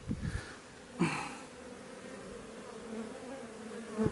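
A crowd of honeybees buzzing in a steady hum around a narrowed hive entrance during robbing, with robber bees trying to force their way into the hive. There is a brief louder burst about a second in.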